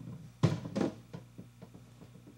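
A large drum being handled and knocking against the pavement. Two loud thumps come about half a second in, then a run of fainter knocks that come closer together and die away, like the drum wobbling to rest.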